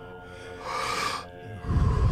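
A deep breath drawn in with a breathy hiss, then let out about a second and a half in with a low rush of air on the microphone: one of a round of Wim Hof method power breaths. A soft, sustained ambient music drone plays underneath.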